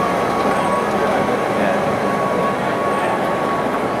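Escalator running: a steady mechanical drone with a thin, unchanging tone above it, and a murmur of voices underneath.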